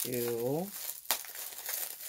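Packaging crinkling and rustling as a parcel is handled and opened, with a sharp crackle about a second in.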